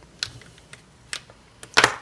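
Test-lead plugs being pulled out of a clamp meter's input jacks: a few sharp plastic clicks and handling noise, ending with a louder, short rustling burst near the end.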